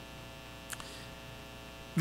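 Steady electrical mains hum, with one brief faint click a little under a second in.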